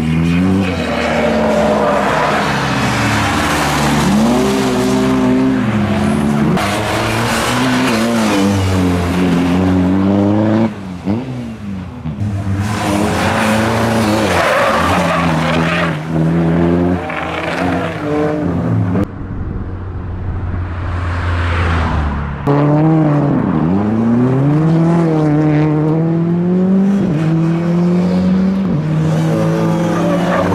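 A first-generation Škoda Fabia rally car's engine revving hard, its pitch repeatedly climbing and dropping through gear changes and throttle lifts, with tyres skidding as the car slides through corners. The sound cuts abruptly between several separate passes.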